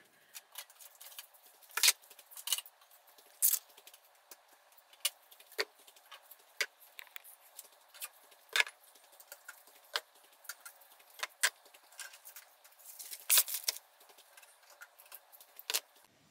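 Irregular clinks and knocks of glass bottles, jars and plastic containers being lifted out of a fridge and set down on a kitchen counter. It is fairly quiet, with a few louder clinks scattered through it.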